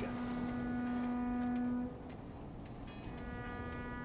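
A ship's horn sounding: one steady long blast that stops about two seconds in, then a second, fainter blast from about three seconds in.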